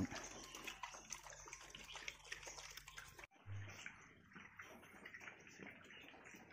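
Near silence: faint steady background hiss with a few soft ticks. It cuts out abruptly about halfway through, followed by a brief low hum.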